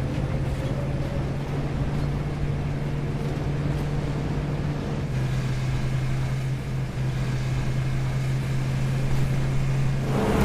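Steady low drone of a vehicle engine with road rumble while driving; the engine's hum holds one pitch throughout.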